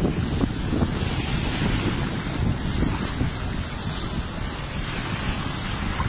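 Small waves washing in over a shallow sandy shore, a steady hissing wash of water, with wind buffeting the microphone as a low irregular rumble.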